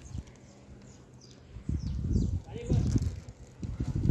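Gusts of wind buffeting the microphone: a low, uneven rumble that starts about a second and a half in and comes and goes.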